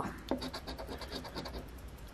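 A coin scratching the coating off a scratch-off lottery ticket in quick, even strokes, about eight a second.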